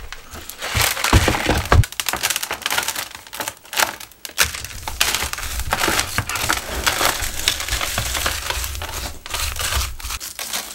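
Hands digging and raking through coarse, granular bonsai soil around a root ball, a dense run of gritty crunching and scraping. About a second in come a few low knocks.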